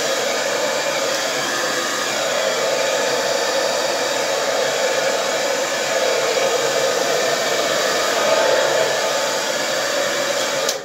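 Handheld hairdryer blowing steadily over wet acrylic paint on a canvas, pushing the base colours across it in a Dutch pour.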